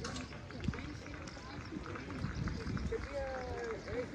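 Indistinct voices of people talking around an outdoor athletics track, over a steady low rumble, with a few faint clicks.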